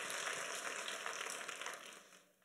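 Audience applause: many scattered hand claps that fade steadily away over the two seconds.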